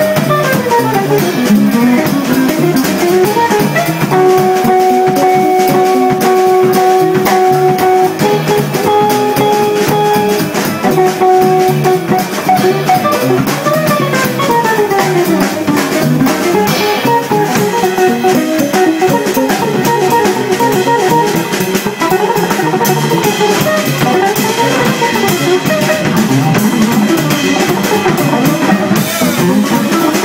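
Live jazz guitar trio: an electric guitar soloing over bass and drum kit. The guitar holds long repeated notes for several seconds, then breaks into fast runs that sweep up and down.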